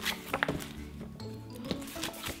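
Light background music, with a few soft thumps of glossy magazines being laid one on top of another on a stack.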